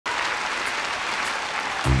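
Large audience applauding steadily. Just before the end, the band's first low notes and the singing come in.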